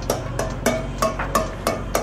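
Light, regular taps on a stainless steel mixing bowl, about three a second, knocking on its sides to loosen a hardened chocolate shell from the bowl.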